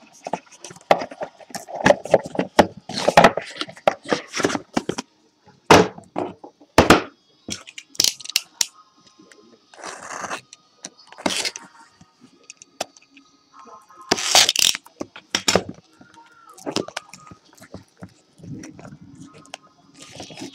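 Trading-card box packaging and foil packs being torn open and handled: an irregular string of sharp crackles and clicks, with a couple of longer rustles.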